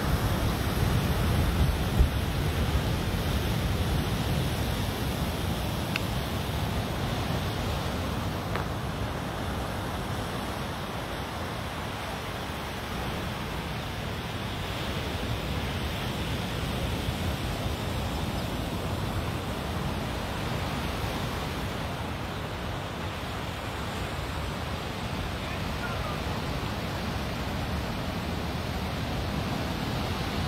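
Ocean surf breaking steadily on a beach, mixed with wind rumbling on the microphone. There is one brief knock about two seconds in.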